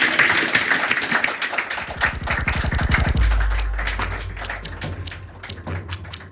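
Audience applause dying down into scattered single claps. About three seconds in, a deep bass tone from the PA comes in and slowly fades.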